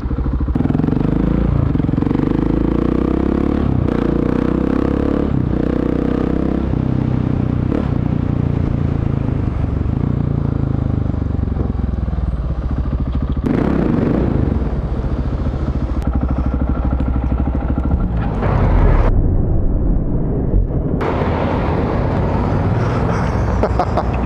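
Motorcycle engine running as it is ridden through city traffic, its pitch shifting with the throttle, over steady wind and road noise.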